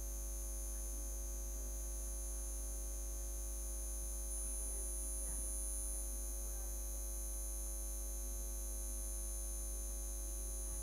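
Steady electrical mains hum with several constant tones, the hum of a public-address sound system left open between announcements.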